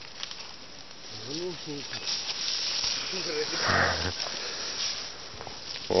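Leafy branches and undergrowth rustling and swishing as people push through the brush, with a couple of short voice sounds about a second and a half in and around three and a half seconds in, the second followed by a louder burst.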